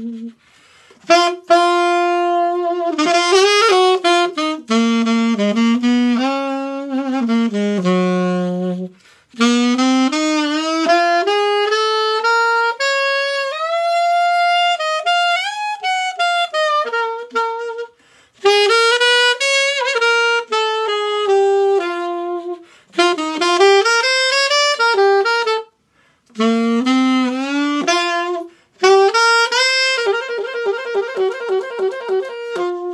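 Conn 6M alto saxophone played solo: a slow ballad melody in long held phrases, broken by short pauses for breath.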